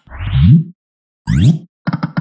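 Synthetic slot-game sound effects from EGT's 5 Burning Hot video slot: two short rising swooshes as a 5-credit spin starts, then a quick run of clicking tones begins near the end.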